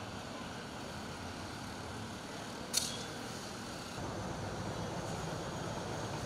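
Street traffic noise with a steady low engine hum that grows louder about four seconds in, and a single short sharp click a little before the middle.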